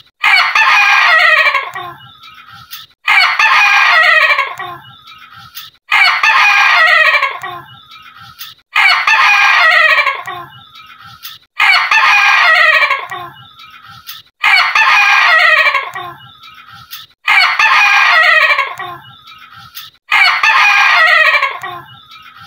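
Ayam ketawa ('laughing chicken') bantam rooster crowing its laughing crow, eight times at even intervals of about three seconds. Each crow starts loud and trails off in a stuttering run of fading notes.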